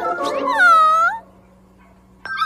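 A cartoon animal character's short high-pitched cry, about a second long, its pitch dipping and then rising at the end. A faint steady hum follows.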